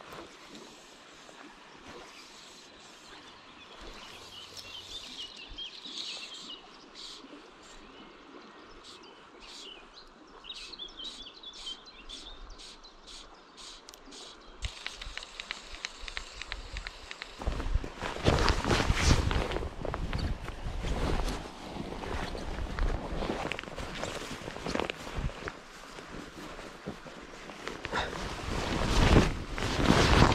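Quiet outdoor ambience with faint birdsong. From a little over halfway through comes a louder, irregular run of footsteps and rustling through bankside grass, with wind buffeting the microphone.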